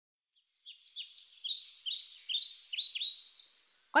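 Birds chirping: a rapid run of short, high chirps that sweep down in pitch, several overlapping, starting about half a second in.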